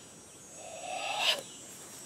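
A man's forceful breath exhaled through the mouth, building over about a second and cut off sharply, as in a martial-arts breathing kata.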